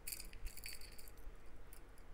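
Faint rattling and clinking of small sterling silver findings, featherweight head pins, moving inside a small clear container as it is handled.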